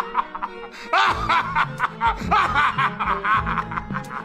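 A man laughing in a long run of repeated 'ha's, starting about a second in, over background film-score music.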